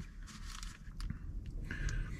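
Soft scraping and handling noises of a plastic fork spreading sauce over a burger bun, with a faint tick about halfway through.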